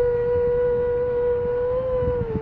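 A young woman's singing voice holding one long, steady, pure-toned note without words, swelling slightly higher near the end and then settling a little lower.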